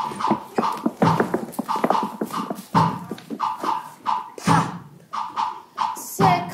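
Live stage-musical number: a rhythmic vamp with short, sharply accented vocal interjections from the ensemble, coming in a steady recurring pattern.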